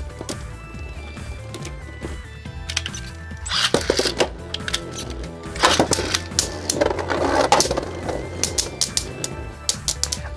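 Two Beyblade Burst tops, the Valkyrie combo and Shield Achilles, spinning in a plastic stadium and knocking together in sharp clicks and rattles, sparse at first and coming thick and fast from about three and a half seconds in, over background music with a steady low beat.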